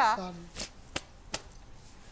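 A woman's voice trails off, then three short, sharp clicks follow within the next second, handling noise over a quiet background.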